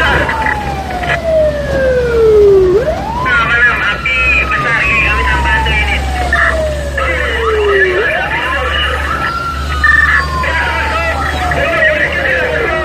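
Fire-service vehicle's electronic siren on wail. Each cycle rises quickly and then slides slowly down over about four seconds, with the vehicle's engine humming underneath.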